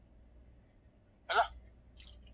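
Low room hum, broken about a second in by one short spoken exclamation, "Hala?", a reaction of surprise in a phone call.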